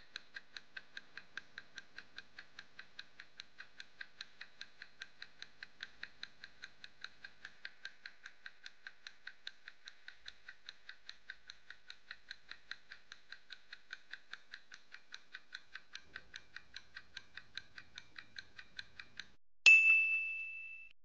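Countdown-timer ticking sound effect, clock-like ticks about four a second, marking the time allowed to solve the puzzle. Near the end a bright ding rings out as time runs out.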